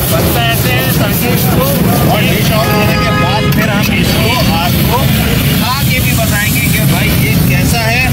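A steel ladle scraping and knocking against a steel wok as noodles are stir-fried and then ladled onto a plate. Under it runs a steady low rumble, and there is busy chatter of voices.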